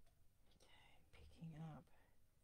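A brief, faint murmur of a woman's voice under her breath, with no clear words, running from about half a second in to just before the end.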